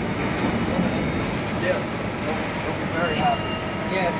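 Steady hum and hiss of running machinery, with faint voices in the background.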